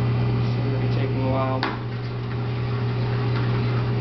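Steady low hum of commercial kitchen equipment, with one sharp clack about one and a half seconds in.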